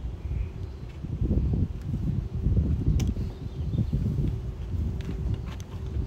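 Uneven low rumble of wind buffeting the microphone, with a sharp click about three seconds in from the camera-rig hardware being fastened to the car roof.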